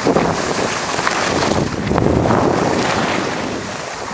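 Wind on the microphone over the hiss and scrape of skis on packed snow, rising and falling in swells as the skier turns.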